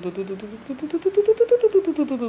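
An adult voice running off a rapid string of repeated syllables in a sing-song, like "da-da-da", the pitch climbing and then falling.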